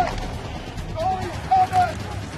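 Short shouted calls from hockey players on the ice, three in quick succession in the second half, over steady low background noise and background music.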